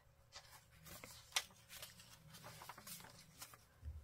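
Faint rustling of paper pages being turned by hand in a handmade journal, with a single small tick about a second and a half in.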